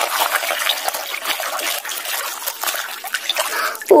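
Water sloshing and splashing in a plastic basin as a hand scrubs a toy mask under muddy water, with small irregular splashes and drips.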